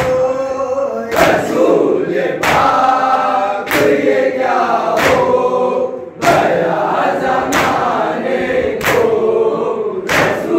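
Group of men chanting a noha in unison, with the whole group striking their chests with their palms (matam) together about every second and a quarter to keep the beat.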